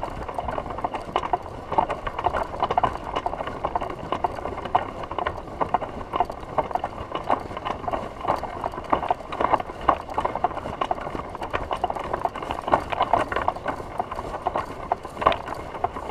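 A hang glider being carried at a walk: irregular knocking and rattling of its frame and hardware, with footsteps on grass and dry straw.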